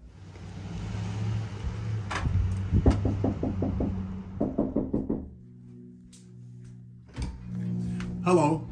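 Knuckles rapping quickly on a front door in two short runs of knocks, over background music.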